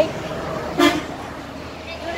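A single short vehicle horn beep just under a second in, over steady roadside traffic noise.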